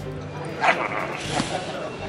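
A short yelp-like cry a little over half a second in, over steady background music.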